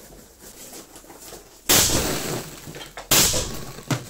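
Two suppressed rifle shots about a second and a half apart from a 5.45 mm Kalashnikov fitted with a BRT gas-relief suppressor, firing 7N6 rounds. Each shot cracks sharply and then rings out through the room's echo for about a second.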